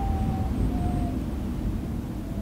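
Low, steady rumble of an ambient intro soundscape, with a few faint thin tones above it that drift slightly down in pitch.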